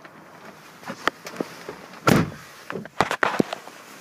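A few short clicks and knocks, with one louder thump about two seconds in.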